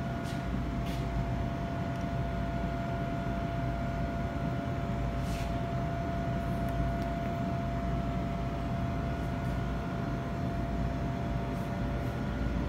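Steady background machine hum: a low rumble with a constant mid-pitched tone, and a few faint clicks.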